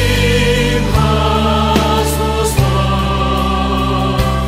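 Worship song: voices singing a slow, held line over sustained chords, the harmony changing about a second in and again past halfway.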